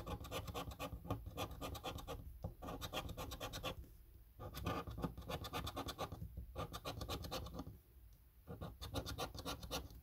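The scratch-off coating of a paper lottery scratch card being scraped away with a hand-held scratcher. It comes as quick, rasping back-and-forth strokes in spells of a second or two, with short pauses between them.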